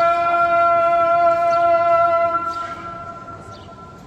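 Muezzin's call to prayer (adhan) from a minaret loudspeaker: one long held note that dies away about two and a half seconds in.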